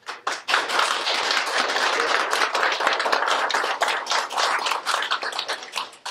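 Audience applauding at the end of a talk: many hands clapping in a dense patter that starts just after the beginning and tapers off near the end.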